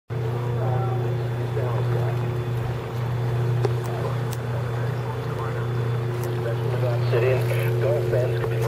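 Steady low drone of a boat's engine, with faint speech from a shortwave broadcast on a handheld receiver underneath it.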